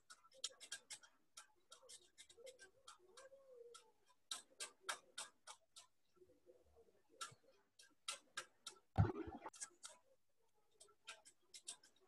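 Computer keyboard typing: faint, irregular runs of quick key clicks, with a louder knock about nine seconds in.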